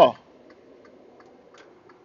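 Faint room noise with soft, light ticks every half second or so, after the last syllable of a man's word right at the start.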